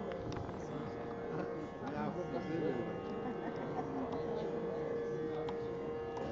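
A voice over a steady musical drone of several held notes.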